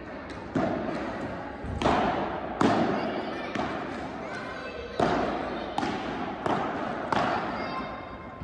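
Padel rally in a large indoor hall: about seven sharp knocks of paddle strikes and ball bounces, each ringing out in the hall's echo, spaced roughly three-quarters of a second to two seconds apart.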